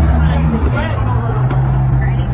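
A vehicle engine running with a steady low hum, under indistinct voices and a couple of faint clicks.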